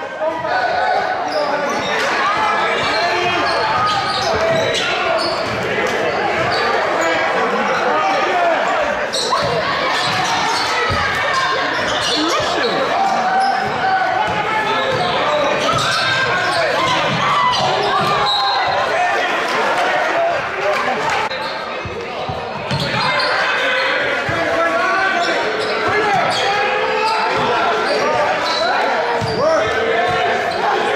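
A basketball being dribbled on a hardwood gym floor during game play, under a steady background of crowd chatter that carries in the gym.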